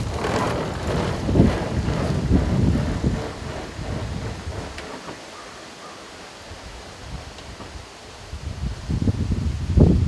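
Low rumble of wind buffeting the microphone while a pedal-powered velomobile rolls away on asphalt. It is loud and gusty for the first few seconds, dies down after about four seconds, and picks up again just before the end.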